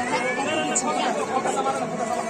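Several voices talking over one another: background chatter of a small crowd.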